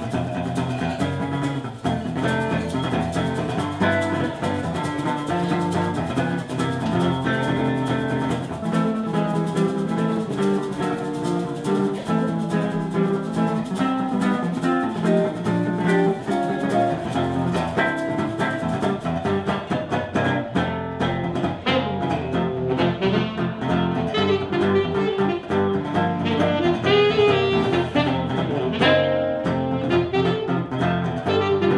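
Live instrumental jazz duo: an acoustic-electric archtop guitar plays the accompaniment under a harmonica solo played into a vocal microphone. Toward the end a tenor saxophone takes over the lead.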